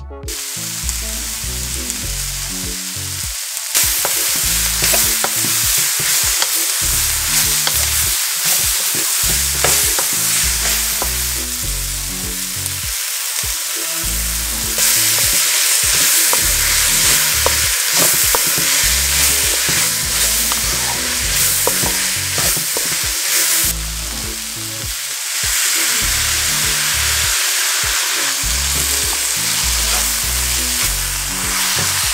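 Julienned vegetables sizzling as they are stir-fried over high heat in a pan, with a wooden spatula scraping and knocking against the pan as it tosses them. The sizzle grows louder about four seconds in.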